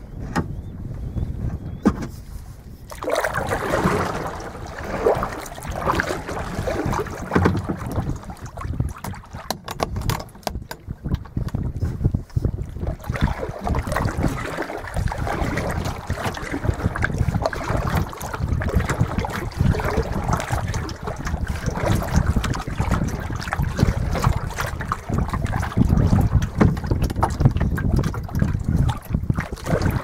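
Small waves lapping and splashing against a plastic kayak hull on choppy water, with wind rumbling on the microphone. It gets louder about three seconds in and then stays steady.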